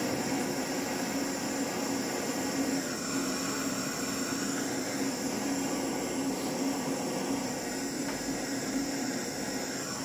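Handheld gas blowtorch on a blue disposable gas cartridge, its flame running steadily as it heats a copper pipe joint for soldering.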